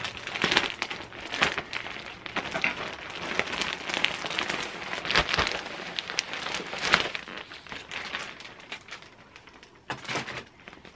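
Clear plastic bag crinkling and rustling in irregular bursts as it is pulled open and off a folded fleece costume, dying down over the last couple of seconds.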